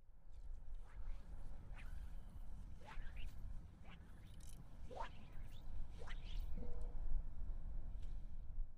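Wind rumbling on the microphone, with a few short high calls cutting through it about three, five and six seconds in.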